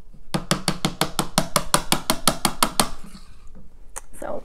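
A makeup brush tapped rapidly against a hard surface: an even run of about twenty sharp taps, about eight a second, lasting about two and a half seconds.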